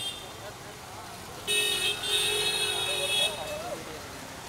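A car horn honking twice, a short toot and then a longer steady blast of a little over a second.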